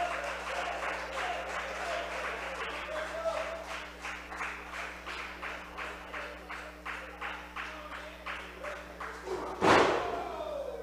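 Crowd clapping in unison, about two claps a second, with scattered voices, cheering on wrestlers who are both down. A single loud thud of a body hitting the wrestling ring comes near the end.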